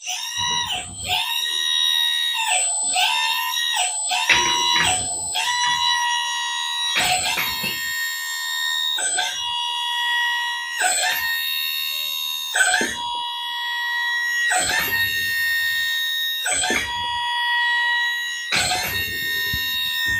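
Hydraulic pump of an XDRC 945 RC excavator whining steadily, its pitch dipping briefly every second or two as the boom and arm cylinders are worked back and forth. The cylinders are being exercised to purge air after a hydraulic fluid change.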